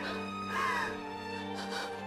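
Background music with steady sustained notes, over which a woman cries out in a sobbing wail, one drawn-out cry about half a second in.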